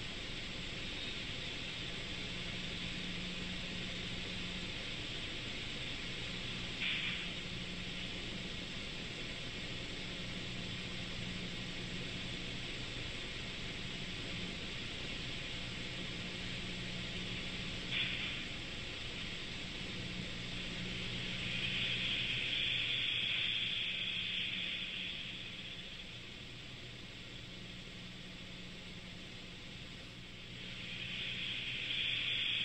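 Test generator attacked by repeated out-of-sync breaker closures, heard from a recording played back in a large hall. A steady hum and hiss carries two sudden bangs about eleven seconds apart as the breaker recloses and jolts the machine, then a louder rush of noise for a few seconds.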